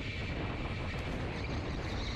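Steady running noise of electric go-karts on the track, with a faint, steady high whine over it.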